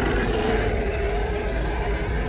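A Vastatosaurus rex roaring, as a film creature sound effect: one long, deep roar held steady.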